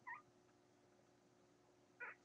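A newborn Catahoula puppy gives one short, high squeak right at the start, then only a faint steady hum.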